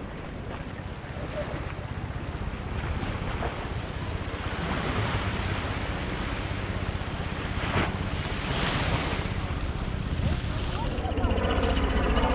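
Sea waves washing and splashing against the boulders of a rock breakwater, mixed with wind buffeting the microphone, growing louder as it goes.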